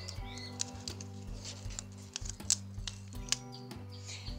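A clear adhesive label being peeled off a sheet of Avery labels: a scattering of sharp, irregular clicks and light crackles from the sticker and its backing sheet, over steady background music.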